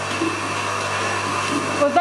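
Bucket milking machine running: a steady hum with a hiss from its vacuum line as the teat cups are fitted onto a cow's teats.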